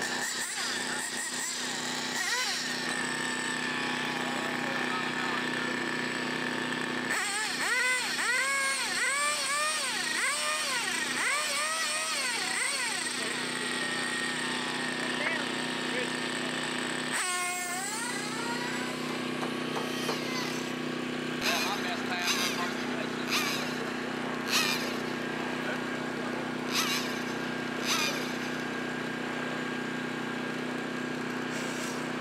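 A radio-controlled car's motor revved in quick rising-and-falling throttle blips over a steady hum, with several short sharp bursts near the end.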